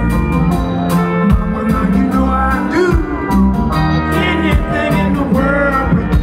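Live blues: a deep male voice singing over picked acoustic guitar, with a steady low bass line underneath.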